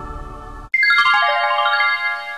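Soft ambient synth music that cuts off abruptly under a second in, followed by a bright electronic chime: a quick descending run of bell-like notes that overlap and ring on.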